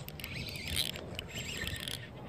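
Abu Garcia Revo baitcasting reel being cranked to bring in a small hooked bass: a faint, soft whirr with light clicks.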